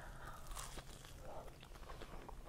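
Faint crunching as a bite is taken from two slices of custard toast pressed together like a sandwich, their toasted outsides crisp, followed by chewing with small scattered crackles.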